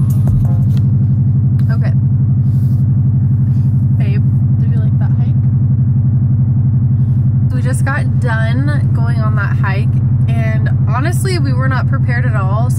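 Steady low rumble of a car on the road, heard from inside the cabin. Voices start talking about two-thirds of the way in.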